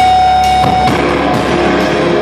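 A heavy rock band playing live: electric guitar, electric bass and drum kit, with one guitar note held for about the first second before the playing changes.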